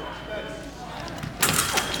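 Saber fencers' exchange in a gym: a sudden loud burst of sharp clashes and impacts about one and a half seconds in, as the two close and meet on the strip.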